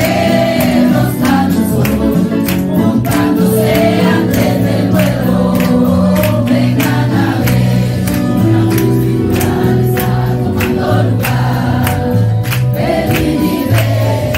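A congregation singing a hymn together in many voices, with a steady percussive beat running through it.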